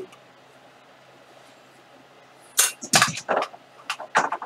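A faint steady electrical hum, then four or five short, irregular knocks and clatters about two-thirds of the way in.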